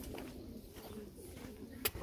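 Domestic pigeons cooing faintly, with a single sharp click near the end.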